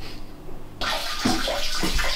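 Water starting to run in a tiled bathroom: a sudden, steady hiss of running water coming on a little under a second in.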